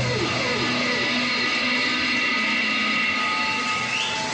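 Live post-punk band's electric guitars droning and feeding back, with several held notes and falling pitch slides in the first second, as the song rings out at its end.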